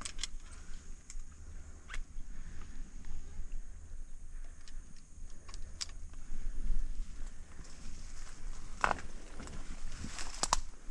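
Scattered rustles and crackles of grass, twigs and a leafy camo suit brushing past as a bowhunter creeps through brush, over a low rumble. The sharpest crackle comes about nine seconds in.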